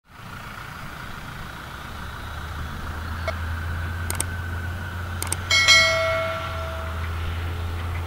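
John Deere 6140R tractor engine running steadily under load as it pulls a cultivator, a low drone heard from a distance. Four sharp clicks come in pairs around the middle, then a bright bell chime rings for about a second and a half and fades: a subscribe-button sound effect.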